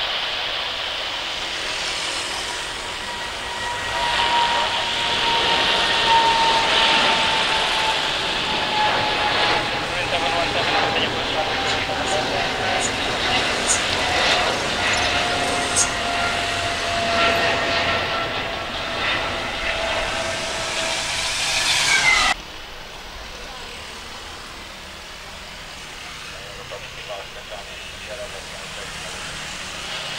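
Jet engines of a climbing Garuda Indonesia Boeing 777 at takeoff power: loud jet noise with a whining tone that slowly falls in pitch. It cuts off abruptly about 22 seconds in, leaving a much quieter airport background.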